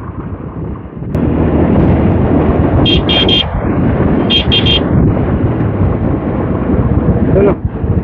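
Motorcycle riding noise: wind rushing over the mic with the bike's engine running underneath, becoming much louder about a second in. Twice, a quick run of three short, high beeps.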